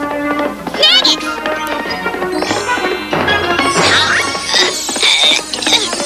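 Cartoon soundtrack music with short, high, squeaky chirps from the small cartoon creatures about a second in. The music grows fuller and brighter from about three seconds in.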